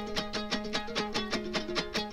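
Instrumental passage of Afghan Pashtun folk music: a plucked string instrument playing rapid, even notes, about six a second, over a steady held low note.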